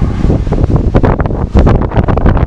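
Heavy wind buffeting the camera's microphone: a loud, uneven low rumble with irregular crackling gusts.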